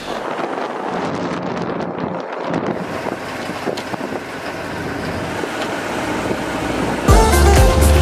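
Steady rushing outdoor noise with wind buffeting the microphone. About seven seconds in, loud music with a heavy bass beat cuts in over it.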